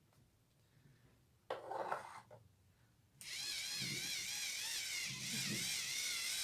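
Battery-powered facial cleansing brush switched on about three seconds in, its small motor buzzing steadily with a wavering pitch as the bristle head works against the cheek. A brief rustle of handling comes just before.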